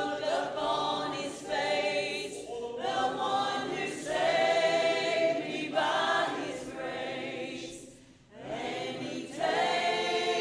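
A small mixed choir of men and women singing together in long held notes, phrase after phrase, with a brief lull about eight seconds in.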